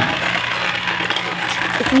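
Homemade rubber-band wind-up toy of paper cup, paper plates and a stick, rattling and scraping as it unwinds and moves across a hard floor. The rattle is continuous and cuts off suddenly just before the end.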